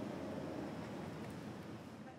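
Steady outdoor background noise, an even hiss with a low rumble, starting to fade out near the end.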